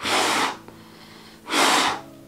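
Two hard breaths blown out through a double-layer cloth face mask at a lighter flame, each about half a second long, the second about a second and a half after the first: a lighter test of the mask, which holds back the breath well enough to be judged effective.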